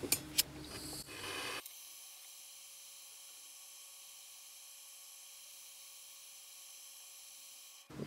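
A few faint clicks in the first second and a half, then a very faint, steady hiss: close to silence.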